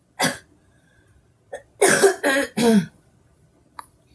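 A woman coughing: one cough just after the start, then three loud coughs in quick succession about two seconds in.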